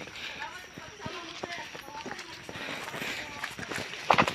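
Running footsteps on a dry, leaf-strewn dirt trail, irregular knocks and crunches underfoot, mixed with short voice sounds from the runners.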